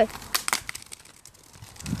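Plastic Coke bottle loaded with Mentos hitting the asphalt and clattering, a few sharp knocks about half a second in, then a low rumbling noise rising near the end.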